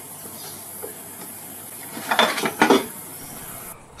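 Packaging and parts being handled on a table: a brief rustle and clatter about two seconds in, then again half a second later, over a steady high hiss that stops just before the end.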